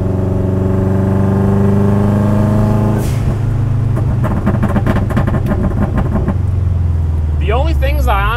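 Turbocharged engine of an all-wheel-drive Miata rally car, heard from inside the stripped cabin, revving up steadily under acceleration for about three seconds. It breaks off sharply, then runs choppier with rattling and settles into a lower steady drone near the end.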